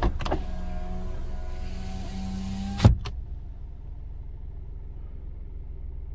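A 2017 Kia Morning's driver-door power window motor runs with a steady whine, and the glass stops against its end stop with a loud thump about three seconds in, followed by a small click. A low, quieter hum remains afterwards.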